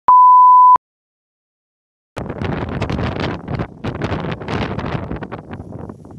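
A loud electronic beep, one steady pure tone lasting under a second, followed by a second and a half of dead silence. Then wind buffets a phone microphone outdoors, rough and gusty.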